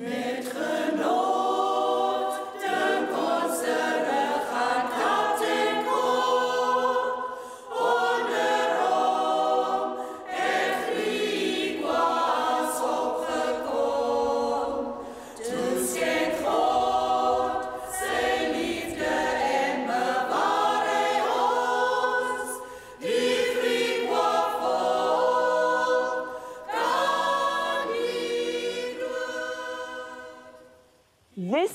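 A choir singing, in sustained phrases a few seconds long with brief breaks between them.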